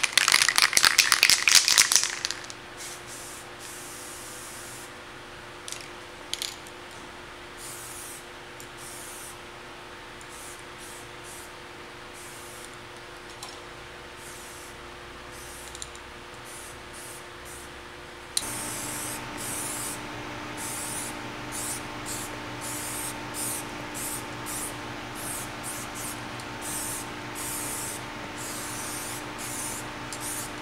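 Spray.Bike aerosol paint can spraying black top coat onto a bicycle frame from close up. A long hiss for about the first two seconds, then many short bursts of spray.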